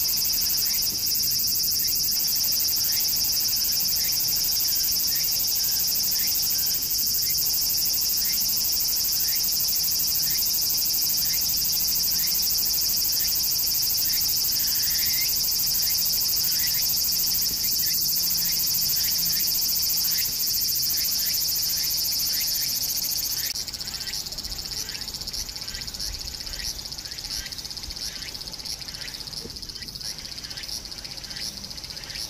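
Insect chorus: a loud, steady, high-pitched shrill that drops somewhat in level about three-quarters of the way through, with short, lower chirps repeating about once a second underneath.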